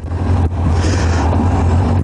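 1986 Kawasaki GTR1000 Concours engine running steadily as the motorcycle rolls slowly, a steady low hum heard from the rider's seat.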